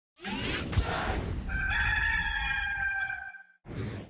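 Intro sound effects: a whoosh, then a rooster crowing once for about two seconds, then a second short whoosh near the end.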